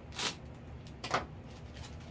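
Clear plastic packaging bag crinkling twice, about a second apart, as it is handled and pulled open around a foam model-airplane wing.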